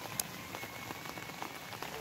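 Steady rain falling on garden foliage, an even patter with a single sharp click about a quarter second in.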